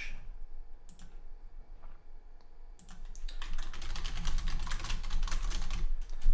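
Typing on a computer keyboard: a quick, dense run of keystrokes begins about three seconds in, after a single click about a second in.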